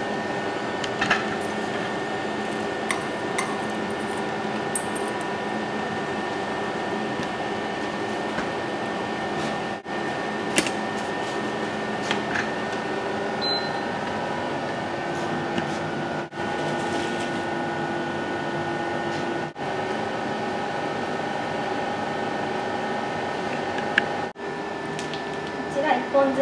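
Steady hum of a kitchen stove and appliances, with several steady tones, while a pot of water heats on a black glass hob; a few light clicks of pots and utensils.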